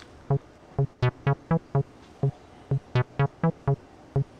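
Avalon Bassline analog TB-303 clone playing a step-sequenced acid bassline: short plucked notes on one low pitch, with gaps in the pattern. Every so often a note comes out much brighter, where the second modulation envelope is sent to the filter.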